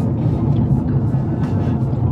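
Steady low road and engine noise heard inside the cabin of a moving car.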